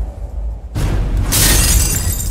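A glass-shattering sound effect: a loud crash of breaking glass about three-quarters of a second in, over a deep low rumble.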